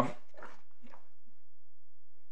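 A man's voice: a hesitant 'um', then a few brief, soft vocal sounds in the first second or so, then only a faint low hum.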